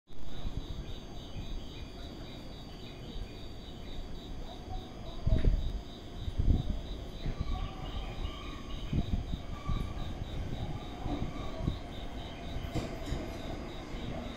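Railway platform ambience as a train approaches from a distance: a low rumble with a few heavy bumps, under a steady, rapid high-pitched pulsing about four times a second.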